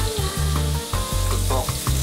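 Mackerel fillet sizzling in hot sunflower oil in a frying pan, fried on one side only over high heat so it crisps.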